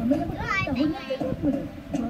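Speech: a high-pitched, lively voice talking, part of a Malay-language broadcast.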